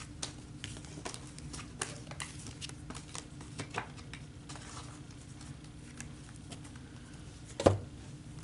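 A deck of oracle cards handled and shuffled by hand: soft, irregular clicks and light taps of cards against each other, with one louder knock near the end.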